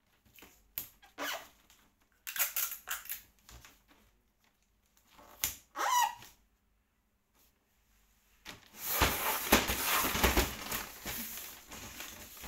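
Wrapping paper rustling and crinkling in short bursts as it is handled and folded around a large box, with a brief squeak about six seconds in. From about eight and a half seconds comes a longer stretch of loud crinkling.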